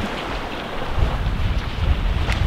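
Wind buffeting the microphone over a steady rush of small waves breaking on the beach; the low rumble of the wind grows stronger about a second in.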